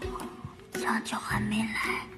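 A soft, whispery voice, much quieter than the narration around it.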